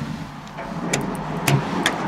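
1981 Toshiba Elemate Cerebrum rope-traction lift doors and door operator running in a steady mechanical rumble. Three sharp clicks come in the second half.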